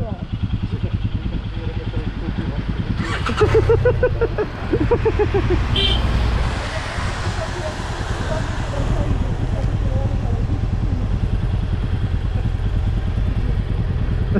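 Motorcycle engine idling with a steady low pulse. A voice speaks briefly a few seconds in.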